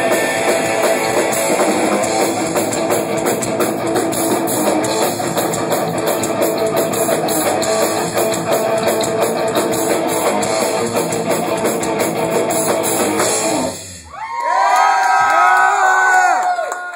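Live rock band playing loud with distorted electric guitar, bass and drum kit through Marshall amps, ending with a sudden stop about three-quarters of the way through. The crowd then cheers and whoops.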